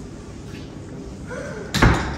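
A door slams shut once, a single loud bang near the end.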